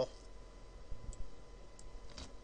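Two faint computer mouse clicks, about a second in and near the end, over low room tone.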